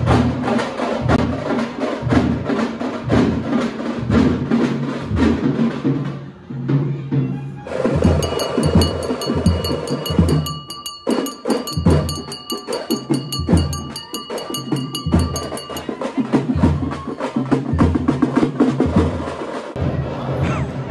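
Drums beating a steady, fast rhythm with deep thuds and sharp, clicking strikes. About eight seconds in, a ringing, bell-like tone joins the drumming for about eight seconds, then stops.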